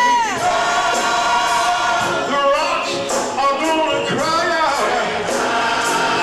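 Gospel choir singing, with long held notes over a steady beat.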